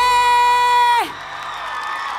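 A woman's voice holds one high note for about a second, then cuts off. A large crowd's cheering and whooping carries on after it.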